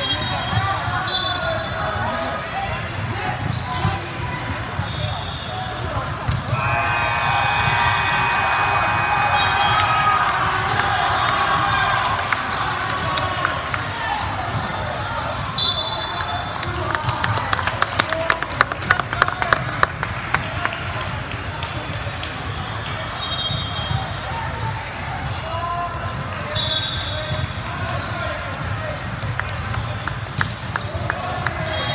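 Large sports-hall ambience during indoor volleyball play: background spectator chatter, short high sneaker squeaks on the hardwood court, and ball thuds. A steady held tone lasts about three seconds, starting a few seconds in. Past the middle comes a quick run of sharp, evenly spaced knocks.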